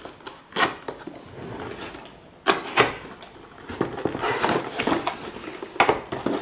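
Thin cardboard box being opened by hand: a few sharp clicks and snaps in the first three seconds as the flap is worked free, then a longer scraping rustle of cardboard as the lid is opened.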